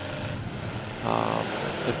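Demolition derby car engines running and revving on the track, with one engine holding a steady high rev for about half a second around the middle.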